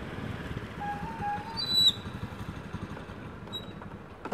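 Small motorcycle engine running as it rides up, a low rumble that weakens after the first two seconds. A short, high-pitched chirp comes just before the two-second mark.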